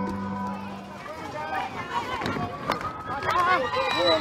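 Music fades out in the first second. Then a crowd of schoolchildren's voices calls out together, many voices overlapping and growing louder toward the end.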